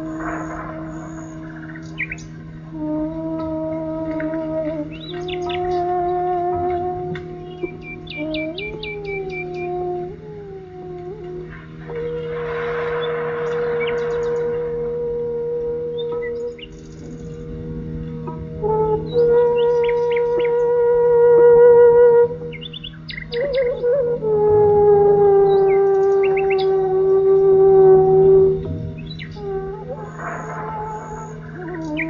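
Slow Indian classical raga of the rains: a single melodic instrument holds long notes and slides between them over a steady low drone, while birds chirp now and then.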